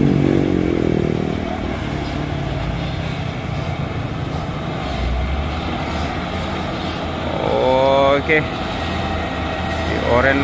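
Diesel engine of a loaded Mitsubishi Fuso 220 PS truck running steadily as it drives slowly toward the camera, with motorcycles passing in the background. A short voice comes in about eight seconds in.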